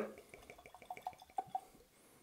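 Whiskey being poured from a glass bottle into a tulip-shaped tasting glass: a faint trickle with a run of small glugs that rise a little in pitch as the glass fills.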